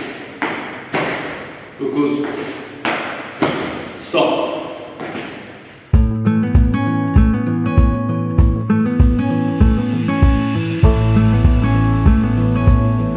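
Feet landing in quick repeated thumps on a gym floor during a knee-raise stepping exercise, each thump echoing in the room. About six seconds in, this cuts to background music with a steady bass beat.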